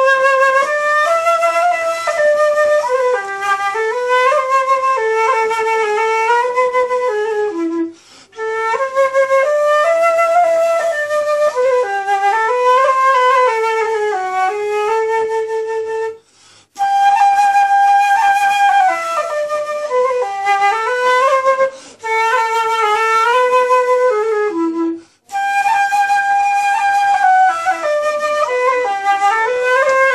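Concert (transverse) flute played solo: a melody moving note to note in phrases, broken by four short pauses.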